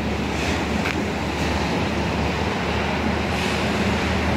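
Steady wind rumbling on the microphone over the continuous wash of sea surf breaking on a beach.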